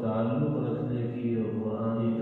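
A man chanting a religious recitation in long, drawn-out melodic phrases, each note held for about a second.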